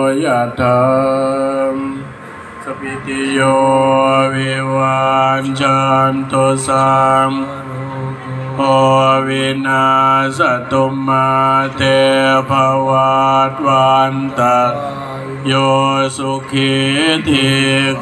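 Buddhist monks chanting Pali blessing verses in a steady, sing-song recitation on a few held pitches, with a short pause about two seconds in.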